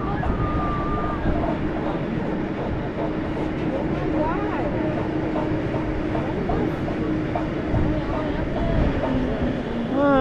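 Steady wind rushing over the microphone high up an Intamin drop tower, with a steady mechanical hum from the ride that fades out near the end. Faint distant voices drift in about four seconds in.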